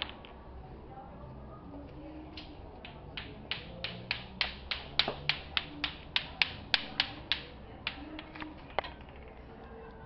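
Bate-bate clacker toy: two hard balls on strings knocking together in a quick run of sharp clacks, about four a second, starting a couple of seconds in, loudest in the middle and thinning out near the end.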